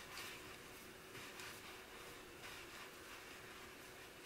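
Faint rustling of wool yarn and knitting needles as stitches are knitted by hand, a few soft swishes over quiet room tone.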